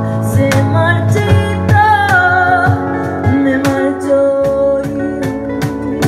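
A woman singing a ballad with a small acoustic band: acoustic guitar, cajón tapping out a steady beat, and keyboard.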